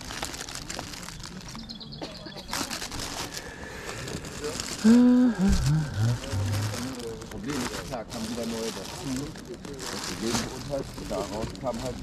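Clear plastic bags of loose Lego pieces rustling and crinkling as they are handled, under background voices. About five seconds in, a loud voice slides down in pitch.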